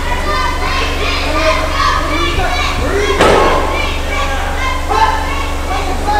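Ringside audience of many voices, children's among them, shouting and calling out over one another, with a single thud about three seconds in and a steady low hum underneath.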